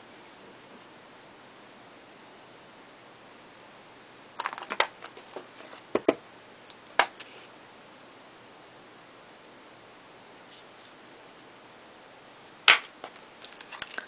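A few short, sharp clicks and taps of a clear acrylic stamp block against the ink pad and work table: a small cluster about four seconds in, two single taps soon after, and a louder click near the end, over quiet room hiss.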